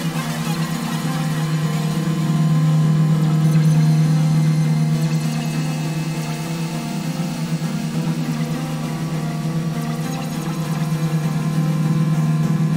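Ambient electronic music played on synthesizers: a sustained low drone with a fast pulsing texture and held higher tones, swelling a few seconds in and easing off again.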